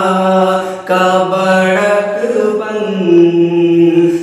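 A male voice sings a naat, an Urdu devotional poem in praise of the Prophet, in long held, slowly bending notes. There is a short break about a second in.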